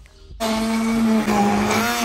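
Handheld immersion (stick) blender switching on suddenly about half a second in and running steadily, puréeing wild garlic leaves, garlic and olive oil into pesto in a plastic jug.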